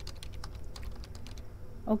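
Computer keyboard typing: a quick run of key clicks as a word is typed out.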